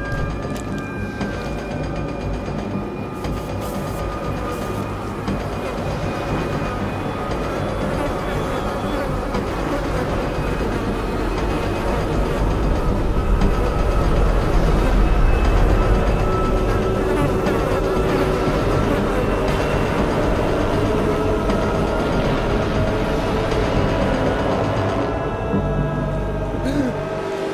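A dense swarm of flying insects buzzing, growing louder to a peak about halfway through, mixed with a dark music score of held tones.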